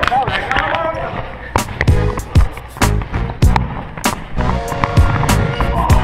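Indoor soccer on a hardwood gym floor: a run of sharp thuds from the ball being kicked and bouncing, with running footsteps and sneakers squeaking, echoing in the gym.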